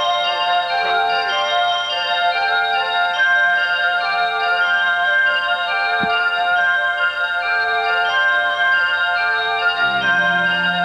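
Live instrumental music of ringing, bell-like mallet tones in a steady rhythm, with little melody.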